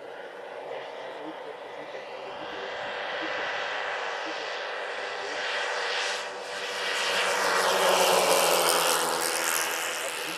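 Propellers and motors of a large four-engined RC scale model DC-6B airliner in flight. The sound grows steadily louder as the model comes in low toward the listener, and is loudest about eight seconds in.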